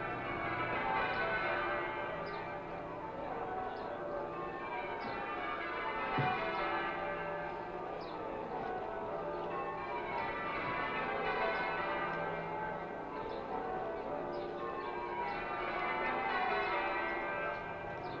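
A ring of church bells being change-rung, the bells striking one after another in overlapping rows that run down and back up in pitch. A brief low thump about six seconds in.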